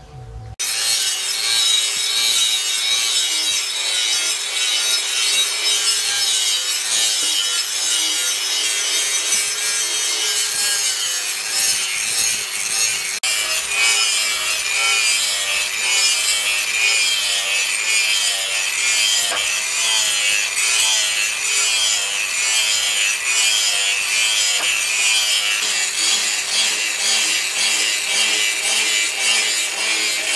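Handheld angle grinder with an abrasive disc grinding a steel cleaver blank cut from a leaf spring, starting about half a second in. A steady, harsh grinding hiss runs over the motor's whine, which wavers in pitch as the disc bites into the steel.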